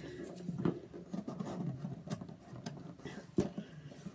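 Light handling sounds of a cardboard shipping box being opened: scattered soft taps, scrapes and rustles, with a couple of sharper knocks near the end.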